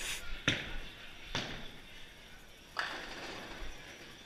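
Bowling-alley clatter: three sharp knocks about a second apart, each with a short ringing tail, from balls and pins striking on the lanes.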